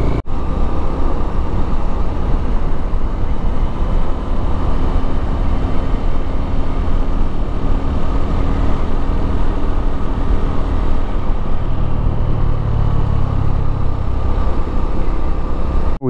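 Motorcycle riding along a road: the engine running steadily under heavy wind rush, with a brief dropout just after the start.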